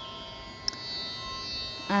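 Steady tanpura drone, its notes held unchanged, with one small click about a third of the way in.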